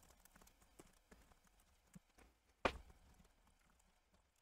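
Computer keyboard being typed on fast, faint irregular key clicks with one louder keystroke about two and a half seconds in.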